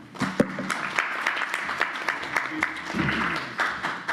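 Audience applauding, a dense patter of clapping hands that fades near the end.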